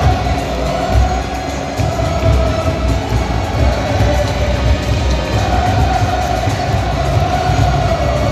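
A large football supporters' section singing a chant in unison, many voices holding one wavering line, over a repeated low beat of the supporters' drums.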